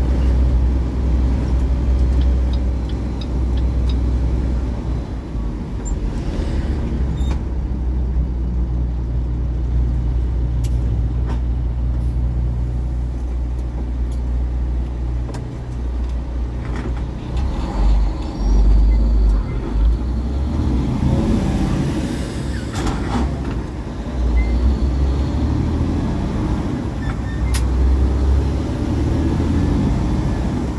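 Cab noise of a tractor-trailer under way at road speed: a steady low engine drone and road rumble, with a few light clicks and rattles.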